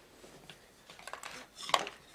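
Small plastic toys being handled on a tabletop: a few light plastic clicks and taps, mostly in the second half, as a figure is set into a toy toilet launcher and it is pushed down.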